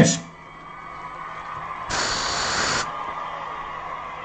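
A short burst of hiss, like a spray being let off, about two seconds in and lasting just under a second, over a faint steady hum.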